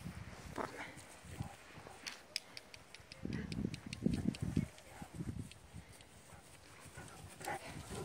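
Two dogs, a harlequin Great Dane and a smaller black dog, playing and running on grass. A quick run of clicks comes about two seconds in, and heavy low thumps follow between about three and five seconds.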